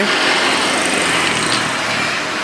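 Steady engine and road noise from nearby traffic, a small engine running with no clear pitch, easing off slightly toward the end.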